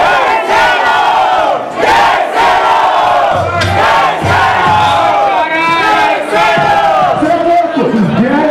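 A dense crowd of many voices shouting and cheering at once, loud and continuous, with no single voice standing out.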